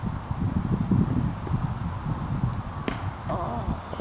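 Wind rumbling on the microphone, with a single sharp crack about three seconds in: a cricket bat striking the ball, after which the batsmen set off for a run.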